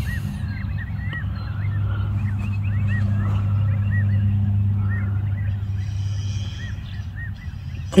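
Birds calling with short, repeated chirps over a steady low hum that swells in the middle and eases toward the end.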